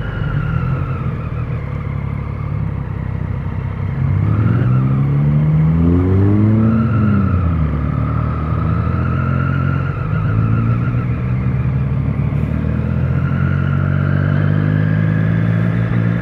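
Motorcycle engine running while riding, revving up about four seconds in and easing off a couple of seconds later, then pulling steadily again, under a low wind rumble.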